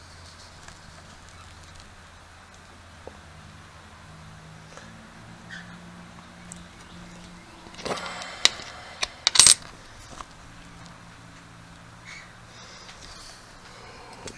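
A silver Mercury dime being picked up and handled on a tabletop: a brief scrape and a few small sharp clicks about eight to nine and a half seconds in, over a faint steady hum.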